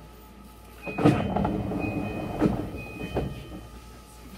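Electric commuter train standing at a station platform: about a second in comes a sudden loud burst of mechanical noise with a few sharp knocks and a short, repeated high-pitched tone, dying away after about two and a half seconds.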